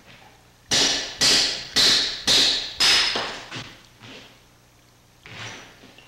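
Hand hammer striking a steel chisel into a block of white stone: five sharp, ringing blows about half a second apart, then a few fainter taps.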